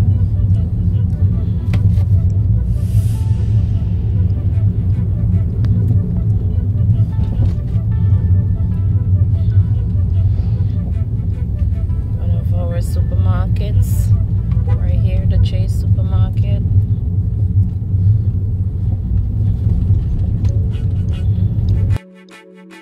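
Inside a moving car: a steady, loud low rumble of road and engine noise while driving in traffic.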